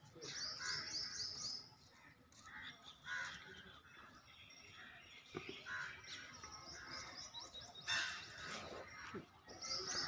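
Birds calling: a quick run of short, high chirping notes starting about half a second in and lasting about a second, another run near the end, and scattered lower calls in between.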